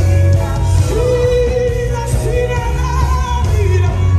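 Live gospel music: a woman sings long held notes that slide in pitch, over a band with a heavy, steady bass.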